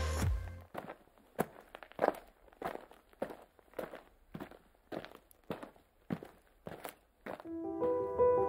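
Footsteps on snow, about two steps a second. Electronic music fades out at the start and piano music comes in near the end.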